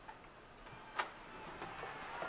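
A single sharp plastic click about a second in, with a few faint ticks around it, from hands working a slim PlayStation 2 console.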